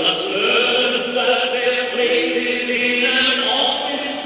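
Several voices of a stage-musical cast singing together in operatic style, holding sustained notes.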